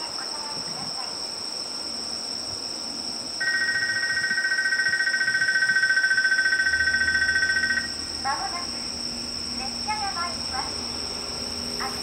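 Crickets chirping steadily in the night, with a loud, steady two-tone electronic signal tone for about four seconds in the middle. After the tone a voice is heard briefly, and a low rumble from the approaching freight train builds beneath it.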